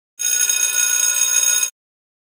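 A bell-like ringing sound effect: a bright ring with many steady overtones, lasting about a second and a half and starting and stopping abruptly.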